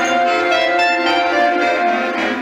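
A clarinet choir, with soprano clarinets and lower curved-neck clarinets, plays together in a large room, holding a long sustained chord.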